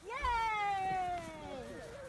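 A person cheering "Yay!" in one long, high-pitched call that falls slowly in pitch and lasts about a second and a half.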